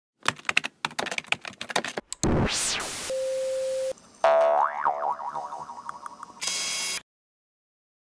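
Animated intro sound effects: a quick run of keyboard-typing clicks, then a rising-and-falling whoosh and a short steady tone, then a springy cartoon boing that bounces several times and fades, ending in a brief hiss and then silence.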